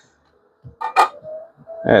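A folding knife set down on the stainless steel platform of a digital kitchen scale: a single sharp metallic click about a second in.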